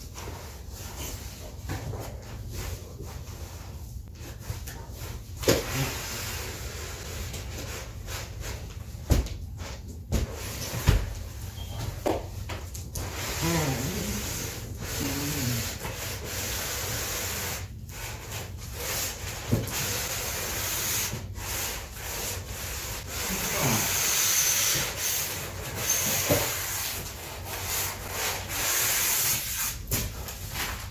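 Cardboard and packing material rubbing and scraping as a tall speaker box is worked open and its contents handled, with a few sharp knocks and short squeaks; the scraping grows louder in the second half.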